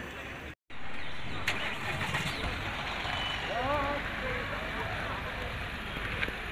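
Street noise with a vehicle engine running and faint voices in the background. The sound cuts out for a moment about half a second in, then the engine and street noise carry on steadily.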